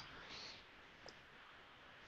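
Near silence: faint room tone, with one short faint click about a second in.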